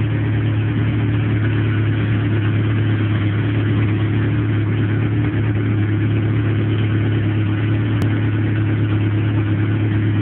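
Honda B20 VTEC four-cylinder engine idling steadily and evenly, running on only its second start-up after being built.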